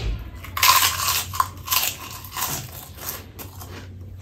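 A crisp fried prawn cracker bitten and chewed, giving a run of loud dry crunches that fade out after about three seconds.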